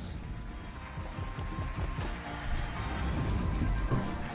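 Online slot game's background music playing while the free-spin reels spin.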